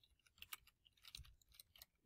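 Faint computer keyboard typing: a few soft, irregular keystroke clicks as a short phrase is typed.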